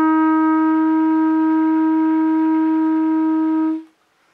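Clarinet sustaining one long, steady note without accompaniment, which fades out shortly before the end.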